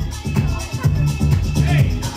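Dance music with a steady beat and a pulsing bass line.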